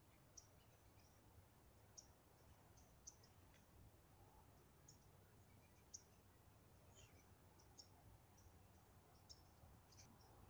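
Near silence: faint background hum with scattered, irregular faint high-pitched ticks.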